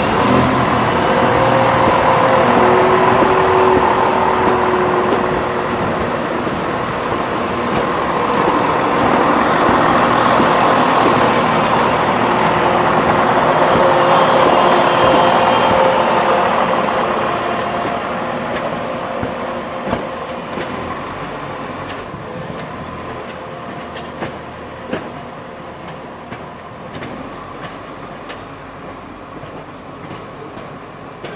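London Midland Class 170 Turbostar diesel multiple unit pulling out under power, its diesel engines running with a steady whine, slowly fading as it moves away. A scatter of sharp clicks comes in over the last third.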